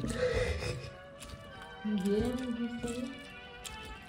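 A background song plays, with irregular knocks and grinding of a stone pestle crushing onion and chiles in a volcanic-stone molcajete.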